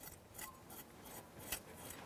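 Back of a knife blade scraping the scales off a whole sea bream in a run of short, faint strokes, one a little louder about one and a half seconds in.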